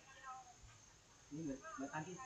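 A cat meowing faintly, with quiet voices in the background.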